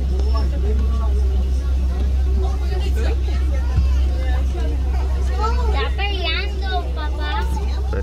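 Safari ride vehicle's engine running with a steady low rumble under passengers' chatter, with a high, animated voice about six to seven seconds in.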